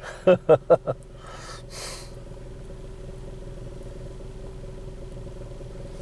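A man's brief laugh, then a car engine running with a steady, unchanging hum, heard from inside the cabin. A short rustle about a second and a half in.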